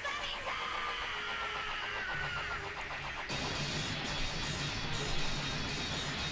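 Anime episode soundtrack: dramatic background music under battle sound effects. A fuller, rushing rumble comes in about three seconds in.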